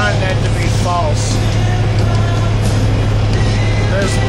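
A man singing along to a heavy metal song playing in a moving semi-truck's cab, over the steady low drone of the truck's engine and road noise.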